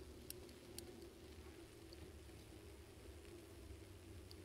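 Near silence: faint low rumble of a bicycle riding along a city street, with two sharp clicks in the first second.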